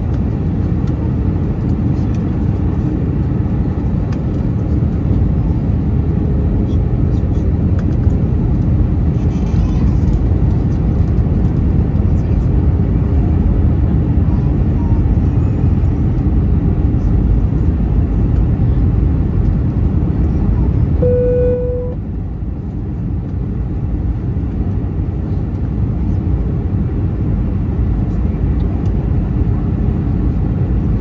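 Steady airliner cabin noise beside the wing of a descending Airbus A319: a deep, even rumble of engine and airflow. About 21 seconds in, a short single tone sounds, and the noise then dips and softens briefly before building back up.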